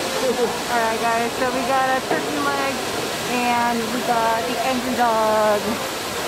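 A steady, loud rushing noise, like running water or an air blower, that starts suddenly, with a person's voice over it.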